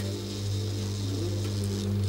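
Kinetic sculpture running: its small electric motor hums steadily while a wooden arm moves a felt pad across the face of a cymbal, giving a low steady hum with several held tones above it.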